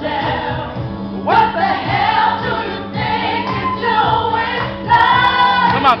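Solo vocalist singing live over an instrumental backing track with a steady beat, holding long notes with vibrato.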